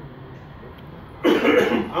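A person coughing once, a short, loud, harsh burst a little past a second in.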